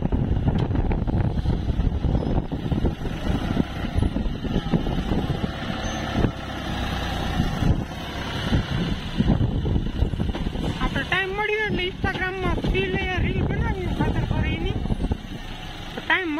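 Tractor's diesel engine running under load as its front loader lifts and dumps a bucket of manure, with a rush of falling manure about halfway through. A voice with a wavering pitch comes in after about eleven seconds.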